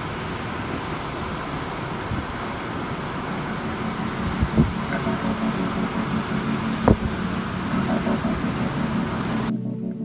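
Steady rushing of wind and surf on the beach, with two brief knocks. Keyboard music comes in faintly underneath about halfway through and takes over alone near the end.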